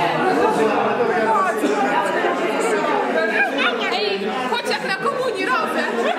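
Crowd chatter: many people talking at once in overlapping conversations, with a few high, rising voices past the middle.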